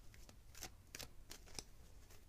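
A deck of tarot cards being shuffled by hand: faint, irregular short card snaps and rustles.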